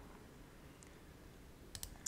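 Near-silent room tone, with two quick, faint clicks near the end from a computer mouse.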